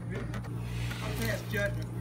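Quiet voices talking over a steady low hum, with a few light clicks.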